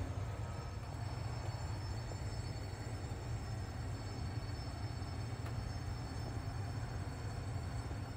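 Air-circulating curing oven's fan running steadily: a low hum with the hiss of moving air.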